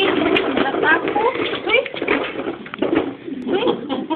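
A toddler's babbling and vocalizing mixed with indistinct adult voices.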